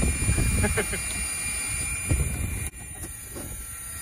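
Wind buffeting the microphone outdoors: a low rumbling noise that drops noticeably quieter about two and a half seconds in.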